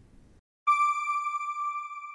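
A single steady electronic tone with overtones, held without change, starting suddenly about two-thirds of a second in after faint room tone: the sound of an outro logo sting.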